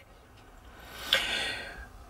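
A person drawing a breath between sentences: a soft, airy intake that swells about a second in and fades away.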